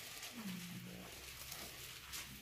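Quiet room tone with one faint, short hummed voice sound, like a murmured 'mm', about half a second in.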